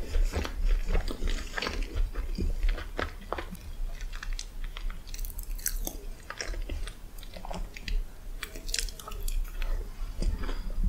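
A person chewing a mouthful of chocolate chip cookie spread with Nutella, with many small, irregular wet mouth clicks and smacks.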